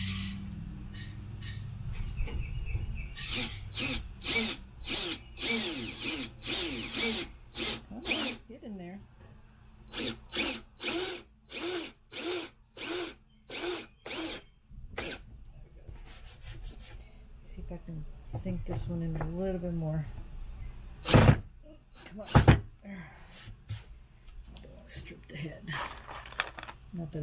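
Cordless drill driving wood screws into a thick pine board in repeated short trigger bursts, at times about two a second. Two sharp knocks a little past the middle are the loudest sounds.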